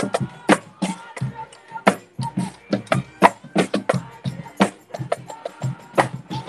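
A street drum line of marching bass drums being beaten hard with sticks, a fast rhythm of sharp, loud strokes about three to four a second.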